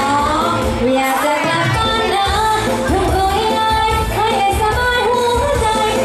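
A woman singing a Thai luk thung (country) song into a handheld microphone, with wavering held notes, over backing music with a steady bass beat.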